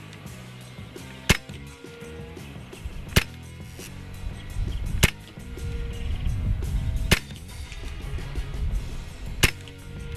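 Five shots from a .25 calibre Hatsan Invader semi-automatic PCP air rifle, each a short sharp crack, fired about every two seconds.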